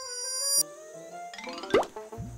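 Cartoon transition music and sound effects: a swooping tone that dips and climbs, then a rising run of notes and a quick upward zip ending in a pop near the end, the sound of the character's head popping back up out of the sand.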